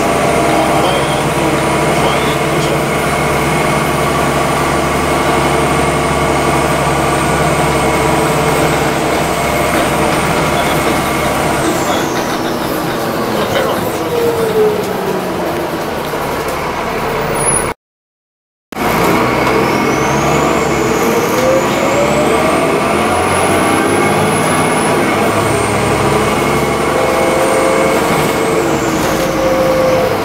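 Interior sound of an Alexander Dennis Enviro400 double-decker bus on the move: a steady engine and drivetrain drone with a high whine that falls away as the bus slows, then climbs again as it pulls off and falls once more near the end. The sound cuts out completely for about a second midway.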